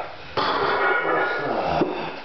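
A man's loud, strained grunt of effort, one long push of breath and voice of about a second and a half that starts shortly in and breaks off near the end, as he drives a heavy 325 lb barbell up on a bench press near failure.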